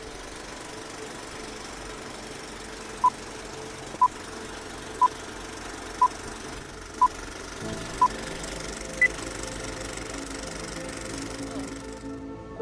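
Film-leader countdown sound effect: a running film projector's steady clatter and hiss, with short beeps once a second as the numbers count down, six at one pitch and a seventh, higher beep at the end. Soft music comes in underneath about halfway through.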